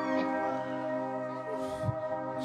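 A steady, sustained ringing chord held on amplified stage instruments, an electric guitar among them.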